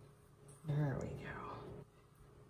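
A woman's short, soft vocal sound, like a murmured or half-whispered word, lasting about a second from a little past the middle; otherwise only faint room tone.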